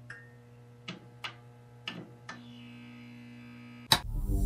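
Intro sound effect of a steady electrical hum with a few sharp spark crackles at uneven intervals, ending in a loud hit just before the end.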